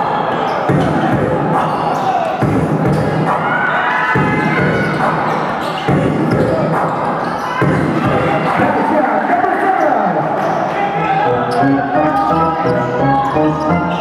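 Basketball bouncing on a gym court during play, over a crowd's voices and background music that becomes clearer near the end.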